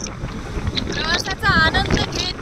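Wind rushing over the microphone of a moving motorcycle, with road noise underneath. A high voice calls out briefly in the second half.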